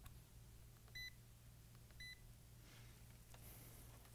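FLIR digital multimeter giving two short, high beeps about a second apart as it is switched to diode mode, with faint rustle of probe handling near the end.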